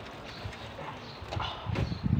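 Wet clothes being scrubbed and squeezed by hand in a basin of soapy water: irregular squelches and splashes, louder in the second half.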